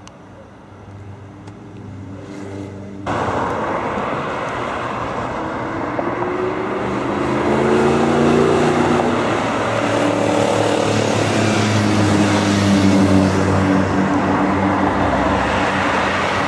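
Audi R8's 4.2-litre V8 accelerating, its engine note climbing. About three seconds in the loudness jumps suddenly, and the car is heard passing close at speed, engine pitch rising and falling over tyre and road noise.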